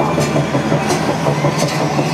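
Arena crowd noise with whistling and scattered claps over a steady, low rumbling drone from the PA.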